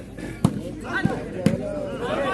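Ball impacts during a shooting ball rally: three sharp smacks about half a second apart, the first the loudest, with voices from the court and crowd around them.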